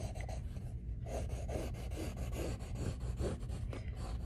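Graphite pencil sketching on paper: short, repeated scratchy strokes, about three a second, as lines are drawn and extended.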